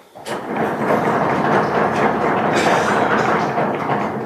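Audience applauding, many hands clapping at once in a dense, steady patter that builds up within the first half second and then holds.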